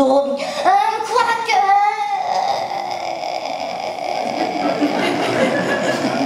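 Young performers' voices speaking through the stage microphone and PA in a hall for about two seconds, then a few seconds of steady noise with no clear voice in it.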